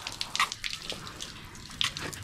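Spray from a garden-hose nozzle hitting a motorcycle's plastic side panel and spoked rear wheel: a steady hiss of water with scattered splashes and drips.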